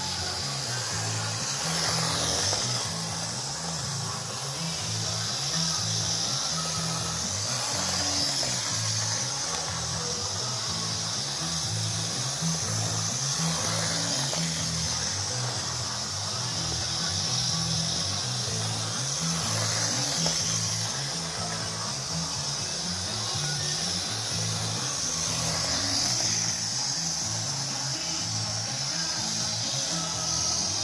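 Background music from a radio, over the hiss and whir of a Bachmann HO scale Santa Fe model locomotive's small electric motor and wheels running on the track, swelling and fading about every six seconds.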